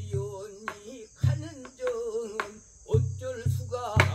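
A man singing Korean traditional sori in long held notes with a wide, wavering vibrato, accompanied by several strokes on a buk barrel drum. A steady high insect drone runs underneath.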